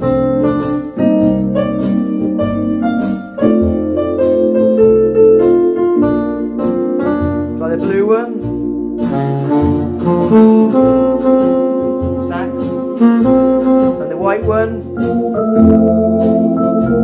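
Orla GT8000 Compact electronic organ playing in a jazz style with its automatic rhythm accompaniment: sustained chords and a melody over a bass line that steps to a new note about twice a second, with a steady drum beat. There are quick upward runs about halfway through and again near the end.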